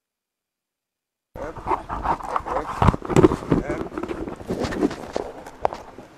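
After about a second of dead silence the sound cuts in: a person's voice making short non-word sounds, mixed with irregular knocks and handling noise.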